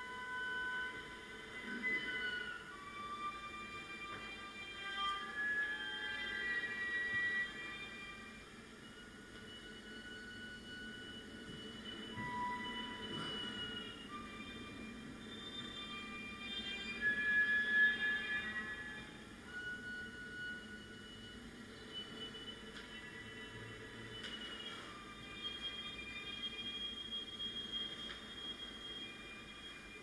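Solo viola played with the bow in a contemporary piece: quiet, thin, high sustained tones held one after another, sometimes two at once, swelling to their loudest about two-thirds of the way through.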